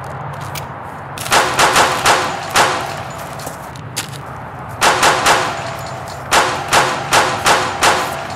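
Handgun gunshot sound effects fired in three rapid volleys, about five shots, then three, then about six, each a sharp crack with a short ringing tail.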